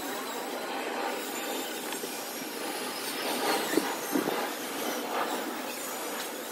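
Construction-site noise: a steady mechanical din with a few short sharp knocks past the middle.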